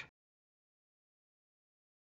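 Near silence: a gap in the narration with no sound at all.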